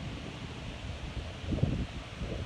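Wind buffeting a phone microphone outdoors: a steady low rumble, with a stronger gust about one and a half seconds in.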